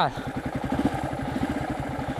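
Yamaha XTZ 250 Lander's single-cylinder four-stroke engine idling steadily, a rapid even pulse.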